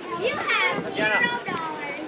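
Children's voices shouting and calling out, with high-pitched cries loudest in the first second and a half.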